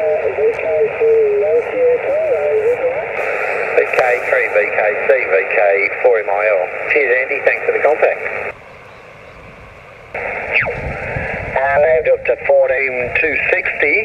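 Single-sideband voice from a distant station heard through the speaker of a small Yaesu HF transceiver, thin and narrow-band over a hiss of band noise. About halfway through the signal drops to quieter receiver hiss, then the dial is tuned across the 20 m band: a tone sweeps past and off-tune SSB voices warble through.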